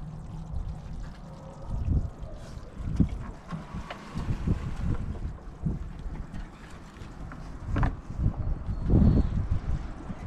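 Wind buffeting the microphone in uneven gusts, with a few light knocks and rattles as a foil pan of meat is lifted out of a vertical charcoal smoker.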